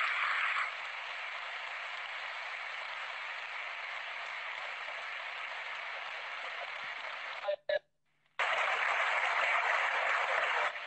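Steady hiss of noise over a live-stream audio feed, with no voice in it. It drops in level abruptly about a second in, cuts out for under a second near the end, and comes back louder. This points to a poor connection or a noisy microphone on the call.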